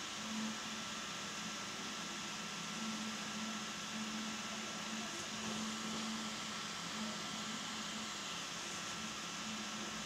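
Room tone: a steady hiss with a low hum that swells and fades, and a thin steady high tone. There is no distinct event.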